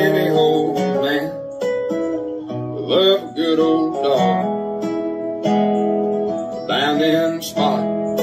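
Country song played on strummed acoustic guitar.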